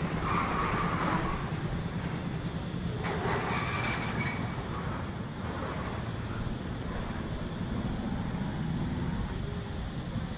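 Street traffic with car and motorbike engines running, a steady low engine rumble underneath, and a brief higher-pitched sound about three seconds in.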